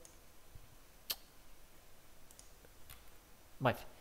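Computer mouse clicks: one sharp click about a second in, then a few fainter ones.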